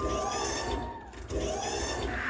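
Dance-routine soundtrack over stage loudspeakers at a machine-like electronic passage: a gritty noise pulse repeating a little more than once every second, with a held high tone that fades out about a second in.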